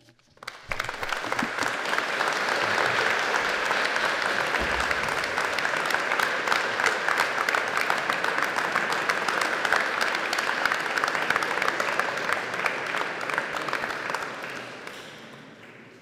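Audience applauding. The clapping builds within the first second, holds steady, and dies away over the last two seconds.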